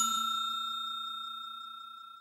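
A bell-like notification chime, the sound effect of a subscribe-animation bell, ringing out and fading steadily, with a faint rapid flutter beneath it.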